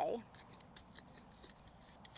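Soil being dug and worked by hand in a flowerbed: a quick series of short, faint scratchy scrapes and crunches.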